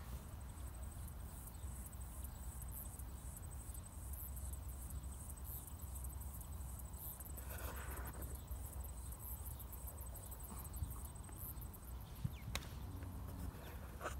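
High-pitched insect chirping, a steady train of short pulses a few times a second, over a low rumble.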